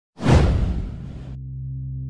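A whoosh sound effect: a sudden loud rush of noise just after the start that fades away within about a second, leaving a low steady drone underneath.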